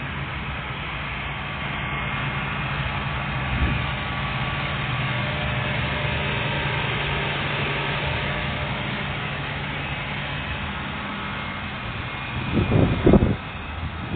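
A steady low mechanical hum, like an idling engine, with one short knock about four seconds in and a few loud low rumbling bursts near the end.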